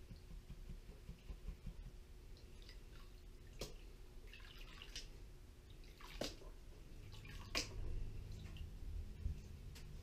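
Faint water sloshing as a plastic gold pan is dipped and swirled in a tub of water while panning paydirt, with three sharp splashes about a third, two thirds and three quarters of the way through.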